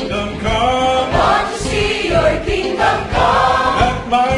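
Large mixed choir of men and women singing a gospel worship song together.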